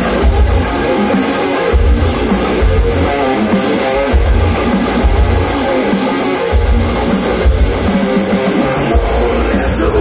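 Melodic death metal band playing live: distorted electric guitars over bass and drums, with no vocals yet. The heavy low end drops out briefly between phrases, several times.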